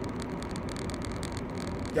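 Steady road and engine noise of a moving car, heard inside its cabin.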